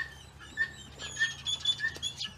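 Small birds chirping in a tree: a short chirp repeated two or three times a second, with higher whistled notes joining about a second in.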